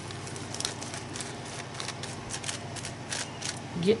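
Sponge dabbing and rubbing gesso onto a paper journal page, making soft, irregular scratchy ticks.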